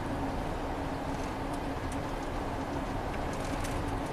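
Steady road and engine noise inside a moving Ford's cabin at road speed: an even low hum with a faint steady tone.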